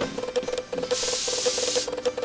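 Airbrush spraying in short bursts of hiss, with one longer, stronger spray from about one second in until near the end, as fine detail is added to fondant.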